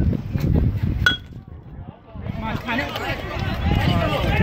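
An aluminium bat hits a pitched ball about a second in: one sharp ping with a brief metallic ring. About a second later several spectators' voices start up, talking and calling out.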